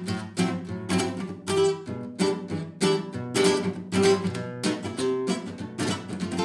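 Nylon-string classical guitar strummed without a pick in the 'invisible pick' technique: index and thumb held together, striking down with the back of the index nail and up with the back of the thumbnail. It plays an even swing or manouche-style rhythm of crisp chord strokes, about three a second.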